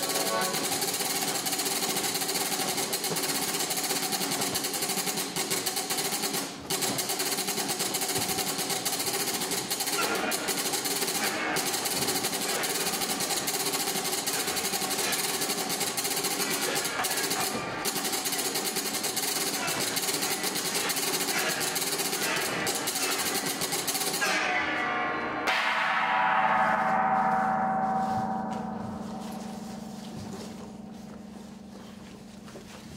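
A loud, continuous clattering din, a live percussion and noisemaker racket, that stops abruptly about 25 seconds in. It gives way to a single ringing tone that fades out.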